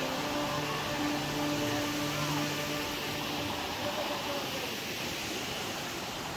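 Shallow stream water running steadily over rocks, an even rushing wash. A faint steady low hum lies under it and fades out about halfway through.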